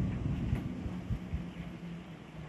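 Distant motorboat engine, a faint steady low hum, under a low wind rumble on a phone microphone, with a few brief low thumps just after a second in.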